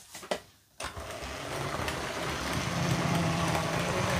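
LEGO 4561 Railway Express's 9V train motor starting up about a second in and running around the plastic track: a steady motor hum with wheel and track rattle that grows louder as the train gathers speed.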